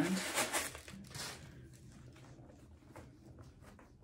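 Faint rustling and irregular small crinkling clicks as a packing insert is pulled out of a shoe by hand.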